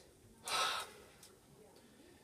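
A single short, sharp breath, a gasp, about half a second in; otherwise near silence.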